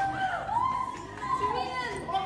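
High-pitched women's voices, drawn out and gliding up and down in pitch.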